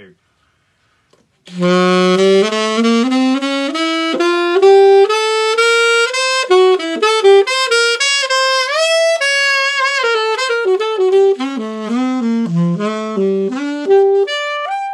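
Recently serviced Conn 6M-era alto saxophone with an underslung neck, played solo in a fast running line of many quick notes across its low and middle range, starting about a second and a half in. There is a smooth upward scoop in pitch about halfway through.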